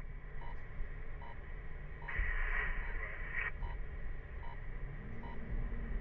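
Emergency-services scanner radio between transmissions: a burst of static hiss about two seconds in, lasting about a second and a half, with faint short beeps at intervals and a low hum that comes in near the end, over a low rumble.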